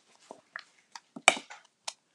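A string of short, irregular plastic clicks and taps as a stamp pad's plastic lid is opened and a clear acrylic stamp block is tapped onto the black ink pad to ink it. The sharpest tap comes a little past halfway.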